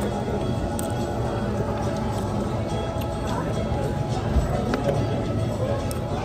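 Background music playing over the indistinct voices and chatter of a busy restaurant.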